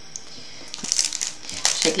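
Crinkling and rustling from items being handled close to the microphone, irregular and crackly. It starts just under a second in and lasts about a second.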